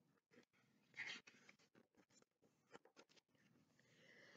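Near silence, with a faint paper rustle of a picture book's page being turned about a second in.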